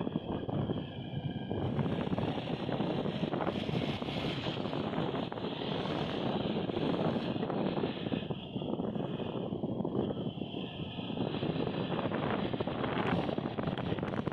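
Steady wind rush on the microphone mixed with road and engine noise from a moving vehicle.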